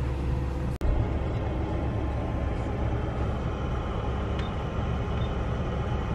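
Steady low rumble of a party bus's engine idling, heard inside the cabin, with a brief dropout a little under a second in.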